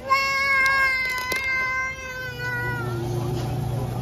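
A young child's voice: one long, high-pitched squeal held for nearly three seconds, sagging a little at the end, with a few light clicks over it. A low rumble comes in near the end.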